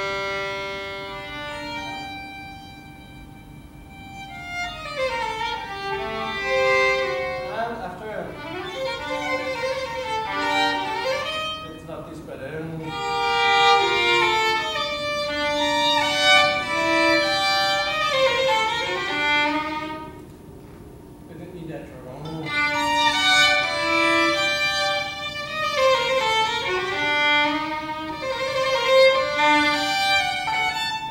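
Solo violin playing a slow melodic passage, opening on a long held note, with softer pauses between phrases a few seconds in and again about twenty seconds in.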